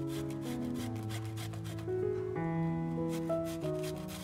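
Cucumber being grated on a flat stainless steel grater: repeated scraping strokes, several a second, over soft background music with held notes.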